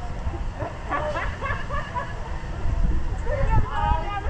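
Indistinct voices talking and calling out, over a constant low rumble.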